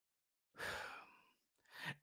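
A man's faint exhaled sigh lasting about half a second, a little way in, followed by a quick breath in near the end.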